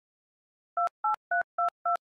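Touch-tone telephone keypad dialing a number: a quick, even run of short two-note beeps, about three or four a second, starting a little under a second in.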